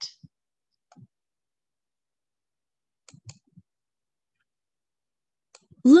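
A few faint, sparse computer mouse clicks, with quiet between them. Near the end a recorded narrator's voice starts reading the page aloud.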